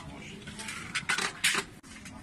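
Light metal clinks and taps as a copper Bosnian coffee set is handled on its copper tray: the coffee pot, the lidded sugar bowl and the small cup knocking together. A quick run of clinks falls in the middle, the loudest about a second and a half in.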